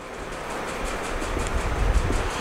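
A low, steady background rumble that grows a little toward the end, with no speech.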